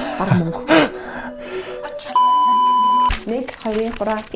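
Censor bleep: a steady electronic beep about a second long, coming in about two seconds in, over speech and background music.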